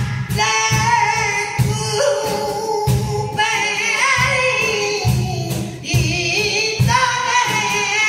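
Flamenco siguiriya played live: a man sings a wavering, ornamented cante line over nylon-string flamenco guitar, with cajón strokes thumping underneath in an uneven rhythm.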